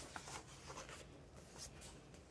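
Faint rustle of a coloring-book page being turned by hand and laid flat, with a light tap at the start and a brief papery swish near the end.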